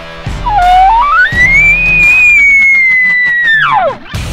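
An elk bugle over background music: a low note about half a second in climbs in steps to a long high whistle, held for about two seconds, then falls away steeply near the end.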